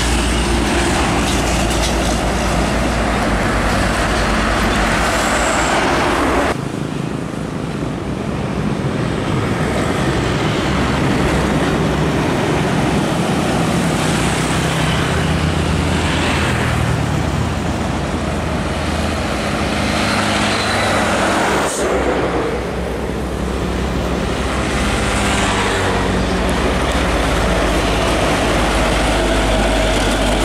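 Diesel trucks driving past at close range with motorcycles and road traffic: engines running over tyre noise. The sound changes abruptly about six and a half and twenty-two seconds in, as one passing truck gives way to the next.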